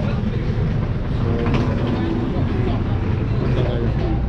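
A large coach's diesel engine idling, a steady low rumble, under the chatter of a crowd of people waiting nearby.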